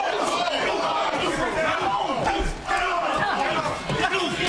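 Several people talking over one another, with no single clear speaker, in a large, reverberant space.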